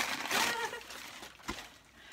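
Packing paper rustling and crinkling as a china teacup is unwrapped from its box, fading out, then a single light knock about a second and a half in.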